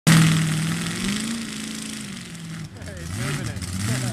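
Monster truck engine running, its pitch rising a little about a second in and then falling back to a lower note.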